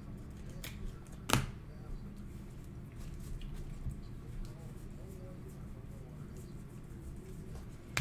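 Trading cards and a rigid plastic card holder being handled, with one sharp plastic click about a second in and a few lighter ticks, over a low steady hum.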